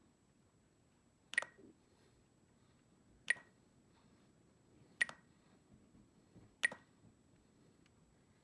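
Spektrum DX9 radio transmitter giving a short beep with each press of its scroll wheel during menu selection, four times about one and a half to two seconds apart.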